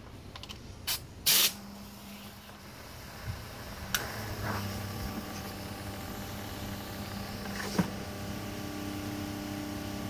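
Foam generator starting up and running: two loud clicks about a second in, then a steady motor hum with a faint hiss that builds around four seconds in as foam comes out of the wand into the bucket.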